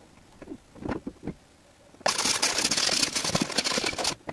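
A frozen-over car windshield being cleared of ice: a few soft knocks, then about halfway in a loud, harsh, hissing-scraping noise starts suddenly and runs for about two seconds before stopping.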